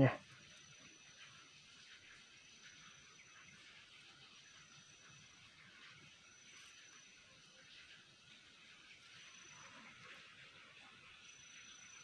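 Quiet outdoor ambience: a faint steady hiss, with a thin high tone that comes and goes in pulses of about a second every one to two seconds.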